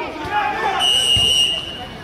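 A referee's whistle blown once: a single steady high note held for about a second, signalling the corner kick to be taken. Spectators' voices are heard just before it.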